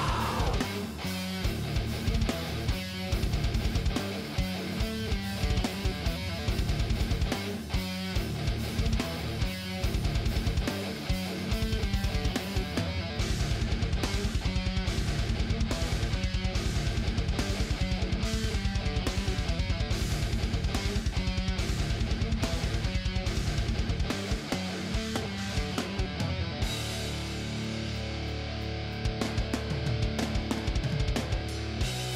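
Post-hardcore band recording: electric guitars over bass and drum kit, with a fast, even drum rhythm through the middle stretch, thinning to a softer passage near the end.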